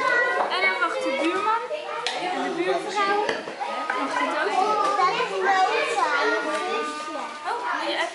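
A group of young children talking and calling out over one another, their high voices overlapping without a break.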